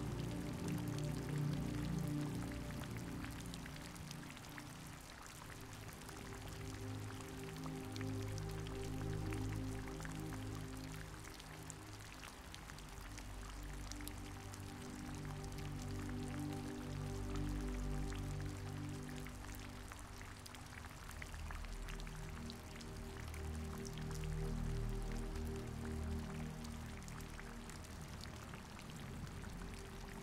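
Soft background music of slow, sustained low chords that swell and fade, over steady rain with a fine pattering of raindrops.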